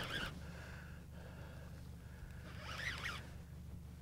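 Baitcasting fishing reel whirring in two short bursts, near the start and about three seconds in, as line is wound in against a hooked pike, over a steady low hum.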